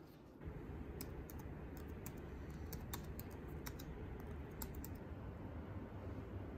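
Typing on a laptop keyboard: irregular key clicks from about a second in until about five seconds in, over a steady room hum.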